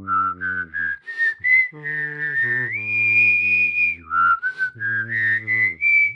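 A whistled melody with a sung low voice part underneath, the two sounding together as a duet. The whistle climbs note by note and holds one long high note in the middle, then drops and climbs again, while the voice holds steady low notes beneath it, breaking off briefly twice.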